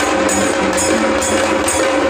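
Live Maharashtrian folk music: hand drums beaten in a steady rhythm of about two to three strokes a second, over a steady held tone.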